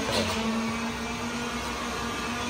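A small motor running with a steady hum and a hiss.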